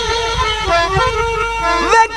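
Punjabi folk song accompaniment between sung lines: a steady, held instrumental note with low drum strokes underneath.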